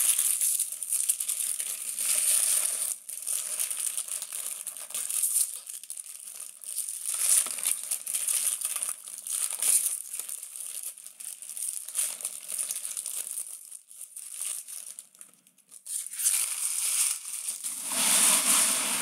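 Foil wrappers of trading-card packs crinkling and tearing as the packs are ripped open and the wrappers crumpled by hand, in irregular bursts with a short lull near the end.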